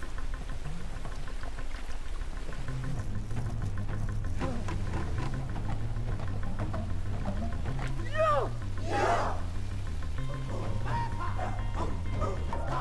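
Dramatic film score with a steady low drum pulse over the rushing noise of waterfalls, with two rising vocal cries about eight and nine seconds in.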